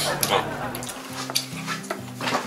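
Background music with a steady bass line, over a wooden spoon scraping and scooping fried rice in a wooden bowl, with a few light clicks of utensils.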